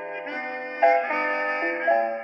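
Harmonica playing a melody over chords, held notes stepping to new ones about a second in and again near the end.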